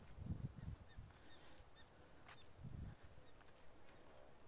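Outdoor scrubland ambience: a steady high insect hiss, a few faint short bird chirps in the first half, and two brief low thumps on the microphone, one early and one near the end.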